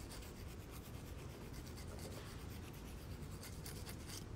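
Faint, continuous rubbing and rustling handling noise on a phone's microphone.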